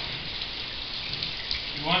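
Tap water running from a sink faucet and splashing over hands held under the stream: a steady hiss with a few small splashes.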